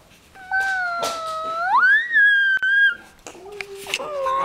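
Brussels griffon dog giving one long, high whine that rises sharply in pitch about halfway and holds there, followed near the end by a lower, steady whine.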